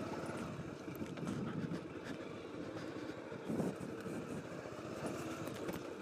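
Motor scooter moving slowly over a riverbed of loose gravel and stones, its small engine running steadily under tyre noise and the crunch of stones.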